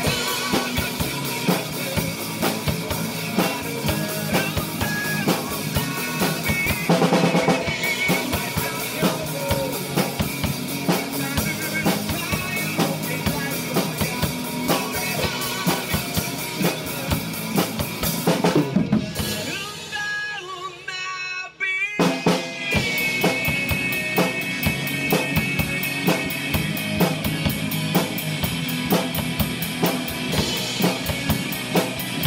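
Acoustic drum kit played to a rock backing track: a steady beat of kick drum, snare and cymbals. About two-thirds of the way through, the music drops away to a thin, quiet break for a couple of seconds, then drums and band come back in together.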